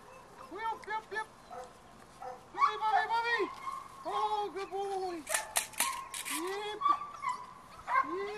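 Seven-week-old puppies yipping and barking in play as they tug at a rag, short rising-and-falling yaps coming in quick, overlapping bunches. A brief scratchy rustle comes a little past halfway.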